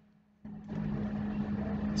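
A moment of dead silence, then about half a second in a steady low hum with background hiss sets in and holds.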